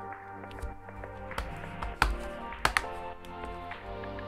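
Background music, with a few sharp plastic clicks and taps over it: the loudest about two seconds in and a quick pair near three seconds. They come as the small plastic access cover on the underside of an HP 250 G1 laptop is pressed back into place.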